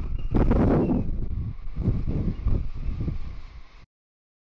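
Falcon 9's nine first-stage Merlin engines heard from the ground during ascent: a deep, crackling rumble with irregular sharp pops. It fades over the last couple of seconds and cuts off suddenly near the end.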